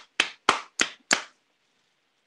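One person clapping: a short run of sharp, single claps about three a second, stopping just over a second in.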